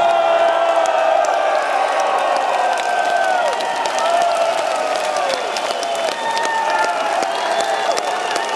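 Concert crowd cheering and clapping, with many voices holding long shouts over dense applause.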